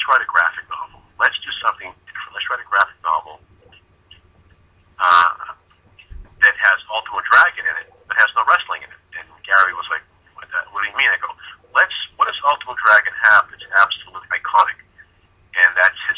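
A man talking over a telephone line, the voice thin and cut off in the highs, with brief pauses between phrases.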